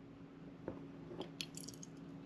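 Faint clicks of a plastic water bottle being handled over a plastic cup, then water starting to pour into the cup near the end.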